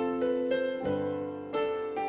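Sampled acoustic grand piano played from a MIDI keyboard: a chord over a low F, with further chords and notes struck about every half second, each left to ring and die away.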